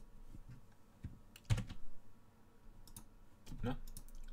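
Scattered clicks from a computer keyboard and mouse as software is being operated, the loudest about a second and a half in.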